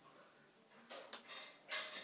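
Handling noise as things on a desk are moved: a sharp click about a second in, then a short burst of clattering and rustling near the end.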